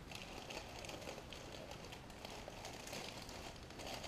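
Faint rustling and crinkling of thin plastic bags being handled, with small ceramic tiles shifting inside them.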